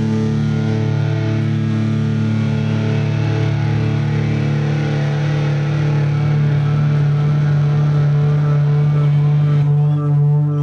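Electric guitars of a live rock band holding a loud, steady drone of sustained notes, with no drumbeat, swelling slightly in the second half.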